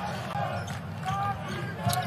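A basketball being dribbled on a hardwood court, under the steady noise of an arena crowd.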